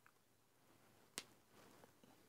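Near silence with a single faint, sharp click about a second in as a fingertip pushes a microSD card into a Sony Xperia Z2's card slot. The card does not latch home, so this is not the clear click of it seating.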